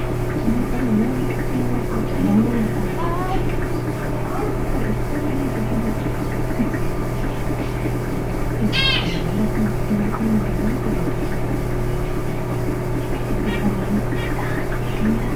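A steady low electrical hum with faint, muffled voice sounds that cannot be made out, and one short high chirp about nine seconds in.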